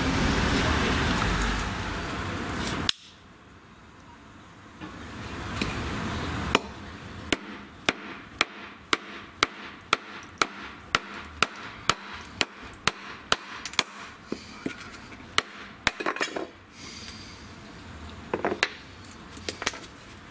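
A mallet striking the spine of a Cold Steel SR1 Lite folding knife in an even rhythm of about two blows a second, batoning the blade through a wooden branch on a wooden block.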